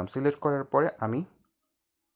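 A man's voice narrating in Bengali, stopping about a second and a half in, followed by silence.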